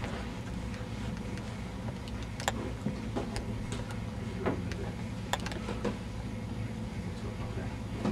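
A steady low hum with a few light, sharp clicks scattered through it.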